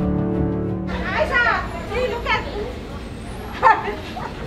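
Sustained background music cuts off about a second in. Then come untranscribed voices at a fast-food counter, including high, child-like vocal sounds.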